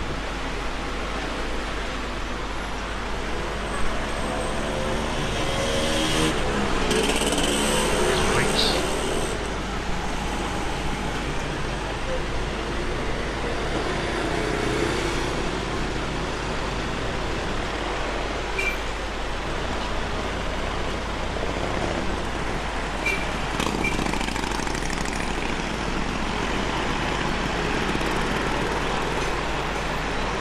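Busy street traffic from cars and motorbikes, a steady rush of noise with indistinct voices. The traffic grows louder about six to nine seconds in as a vehicle passes.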